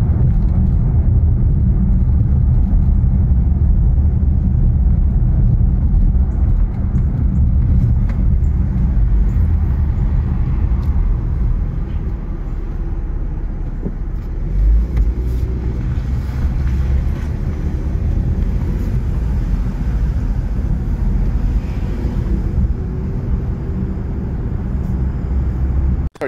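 Car driving slowly over a rough street: a steady, loud low rumble of road and engine noise, with one brief heavier thump near the middle.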